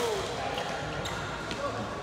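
Badminton racket striking a shuttlecock in a jump smash: one sharp crack right at the start, then a few fainter taps.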